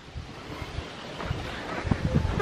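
Wind noise buffeting the microphone over the low, uneven rumble of a sport ATV creeping along a dirt trail, growing louder through the moment.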